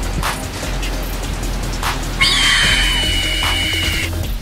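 Background music with a soft beat about every second and a half. About halfway in, a loud, shrill creature screech starts and holds for nearly two seconds: the cry of an animated pterosaur.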